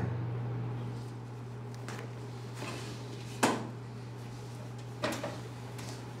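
A few short, sharp knocks and scrapes from a cardboard box costume being handled and lifted. The loudest knock comes about three and a half seconds in, and a steady low hum runs underneath.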